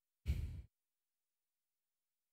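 A single short sigh: one breath pushed out into a close microphone, lasting about half a second.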